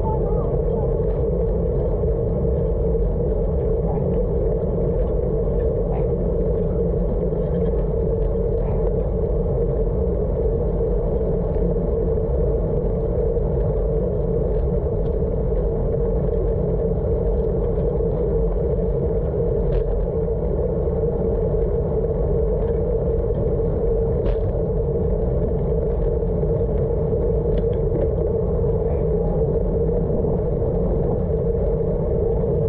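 Steady wind and wet-road noise on the microphone of a camera on a road bike riding at speed through rain, with a constant low hum and a few faint ticks.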